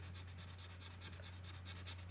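Chameleon alcohol marker nib rubbed back and forth on paper in quick, even strokes: a faint, scratchy rubbing as a colour swatch is filled in. A steady low hum lies underneath.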